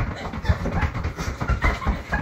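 A quick, irregular run of thumps and knocks, several a second.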